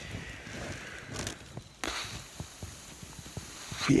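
Soft rustling with many small crackles, typical of nylon down-jacket and sleeping-bag fabric shifting as a person lies in a tent.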